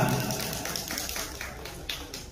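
Scattered hand claps from a small audience, quick and uneven, fading away.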